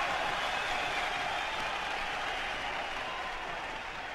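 Concert audience applauding on a live recording played back from a vinyl record, slowly dying down.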